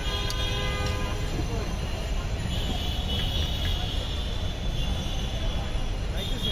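Steady low rumble of street traffic, with a vehicle horn sounding for about a second at the start.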